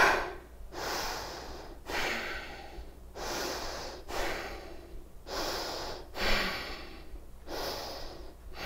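A woman breathing hard and audibly, about one quick breath a second, from the strain of holding a dumbbell out at arm's length.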